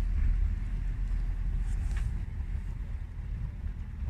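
Wind buffeting the microphone over the low sound of a tram-train slowly approaching in the distance, with a brief click about halfway through.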